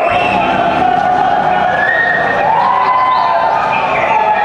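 Live concert sound: a crowd of voices cheering and calling over music from the PA, with long held melodic notes stepping up and down.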